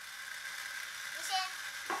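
Quiet room tone with one brief, faint high-pitched voice about a second and a half in.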